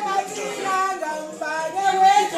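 Women's voices singing a dance song unaccompanied.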